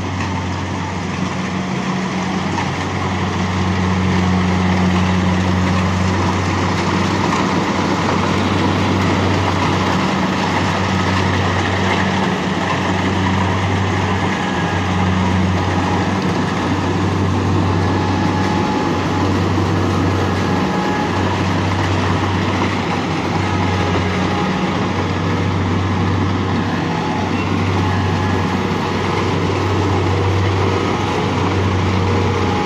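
Rice combine harvester running steadily under load as it cuts standing rice, a deep engine hum over machinery noise. It grows louder over the first few seconds as it comes closer, then holds.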